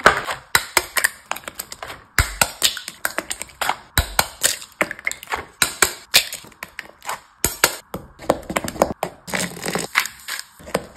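Close-miked kitchen sounds: a clear plastic egg carton clicking open, then eggs tapped and cracked one after another over a glass bowl. A quick, uneven run of sharp taps and cracks, with a couple of dull thumps.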